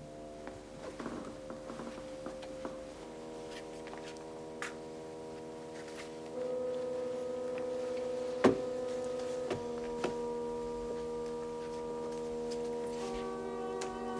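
Eerie drone music: a held chord of steady tones that swells and thickens in layers, a new layer entering about three, six and thirteen seconds in. A few faint knocks sound over it, and one sharper knock comes about eight and a half seconds in.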